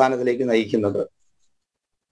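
A man speaking for about a second, then cutting off into dead silence.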